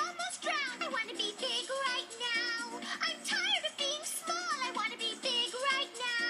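Children's TV song: a puppet character's high voice singing a verse over instrumental backing, its held notes wavering with vibrato.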